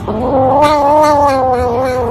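A kitten gives one long, drawn-out yowl lasting about two seconds. The pitch rises at first and then slowly sinks. It is guarding its plate of food as a hand reaches toward it.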